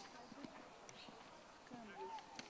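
Faint hoofbeats of a horse moving under saddle over a dirt arena surface, with faint voices in the background.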